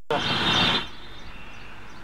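Outdoor background noise: a loud rushing noise with a brief snatch of a voice for under a second, then a quieter steady hiss.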